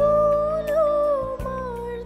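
A woman singing a hymn into a microphone, holding one long, slightly wavering note that falls a little near the end, over instrumental accompaniment with a steady beat.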